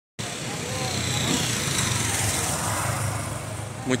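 A road vehicle passing, a steady rush of engine and tyre noise with a low hum that swells and then fades; a man starts speaking right at the end.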